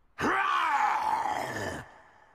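A cartoon character's drawn-out groan that sinks in pitch, lasting about a second and a half.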